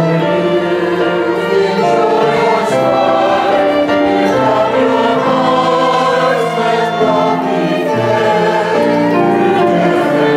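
Church choir singing an anthem in sustained, held phrases, accompanied by a small instrumental ensemble with flute, clarinet and double bass.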